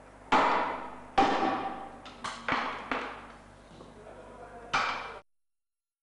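Pendulum impact testing machine released to break a notched test specimen: a series of sharp metallic clanks, each ringing away, with two loud ones in the first second and a half, softer ones after, and another loud one near the end. The sound then cuts off suddenly.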